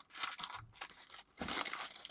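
Clear plastic packaging crinkling and rustling as it is torn open and a photo-etch sheet is worked out of it, with the loudest rustle near the end.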